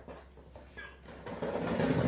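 A package being opened by hand: a short click at the start, then rustling and tearing of the packaging that grows louder near the end.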